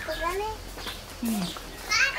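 Women's voices talking in short, rising and falling phrases.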